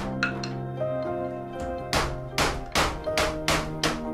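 Background music with held notes, over a run of sharp knocks on the caravan's wooden wall framing, about five in quick succession from about two seconds in.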